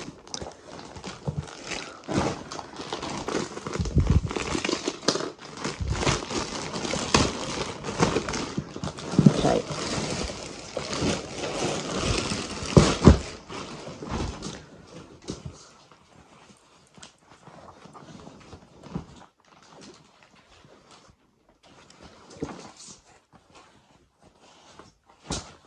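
Clear plastic packaging crinkling and rustling as a pillow is handled and pulled out of its bag, with a few soft thumps. It is busy for about the first fourteen seconds, then quieter, with only occasional rustles.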